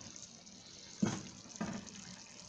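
A tagine of stuffed vegetables simmering on the stove: a steady hiss of bubbling liquid and steam. Two short, sharper sounds come about a second in and again half a second later.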